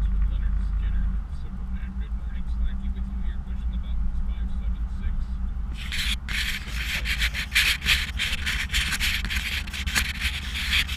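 Ford 460 V8 pickup engine droning low inside the cab while towing. About six seconds in, something rubs and scrapes directly against the camera's microphone, a loud scratchy handling noise over the engine.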